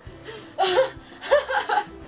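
Young women laughing and gasping in two short bursts, about half a second in and again after a second.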